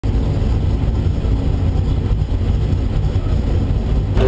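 V8 of a Chevrolet IROC Camaro, a 383 cubic-inch engine with Holley HP EFI, idling steadily with a low, even note, heard from inside the cabin.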